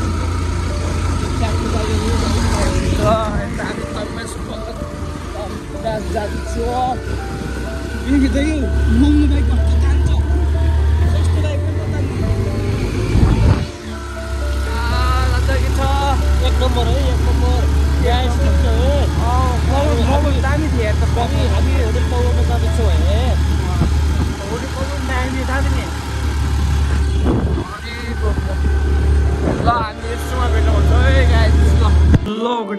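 Steady low wind rumble on the microphone of a moving motorbike, dropping out briefly a few times, with music and a wavering singing voice over it.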